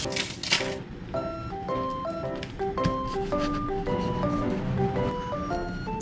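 Cheerful background music: a light melody of short, steady notes stepping up and down in pitch. A brief hiss sounds in the first second.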